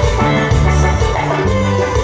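Live dance band playing loud music with a steady beat, its bass line moving to a new note every half second or so under bright pitched melody tones.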